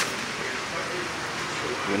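Fish deep-frying in hot oil, a steady sizzling hiss.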